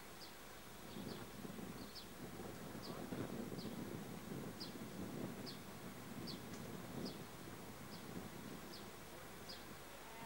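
A Class 66 diesel locomotive's engine rumbles faintly as it approaches, swelling in the middle. Over it a small bird repeats a short, high, slightly falling chirp a little more than once a second.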